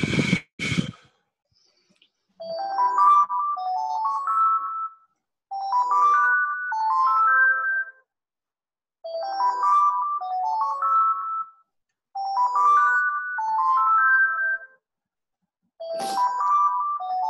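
A phone ringtone: two quick runs of rising electronic notes, the phrase repeating about every three seconds from a couple of seconds in. Just before it, two sharp puffs of breath blown at a microphone.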